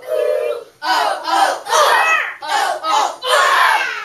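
A class of young children chanting a phonics chant loudly in unison, in about five short rhythmic phrases.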